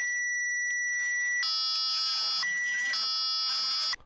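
Electronic beep tones from a robot program switching between two pitches. A clear high tone marks the rotation sensor's beam inside region A, and a lower, buzzier tone marks it outside that region. The high tone sounds first, drops to the low tone about a second and a half in, returns to the high tone briefly around two and a half seconds, then drops to the low tone again until it cuts off.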